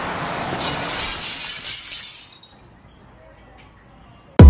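Glass-shattering sound effect: a rising rush of noise breaks about half a second in into a crash of tinkling, crackling fragments, which die away over the next two seconds.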